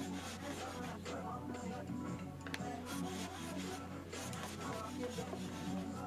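Repeated strokes of a metal jack plane shaving a wooden board, heard under quiet background music.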